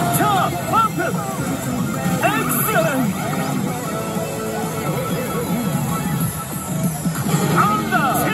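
Pachislot machine playing its game music and electronic sound effects, with bits of voice, as its reels spin and stop.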